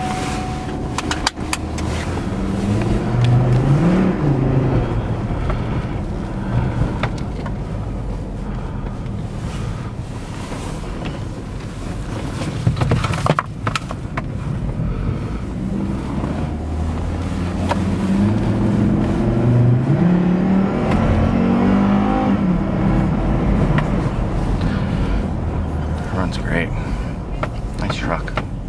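2008 Hummer H3's 3.7-liter inline-five engine accelerating, heard inside the cabin over steady road and tyre noise. Its pitch climbs once a few seconds in and again in a longer climb past the middle. There is a sharp knock about halfway.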